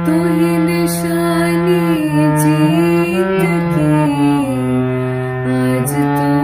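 Harmonium reeds playing a slow shabad melody: held notes over a lower sustained note, the melody stepping to a new pitch every second or so.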